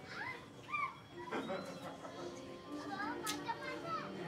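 Children's voices and people talking over faint background music, with two short high rising squeals near the start and a brief sharp tap a little past three seconds in.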